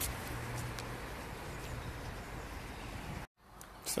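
Steady outdoor background noise with no distinct event, broken off abruptly by an edit a little over three seconds in, followed by a quieter stretch.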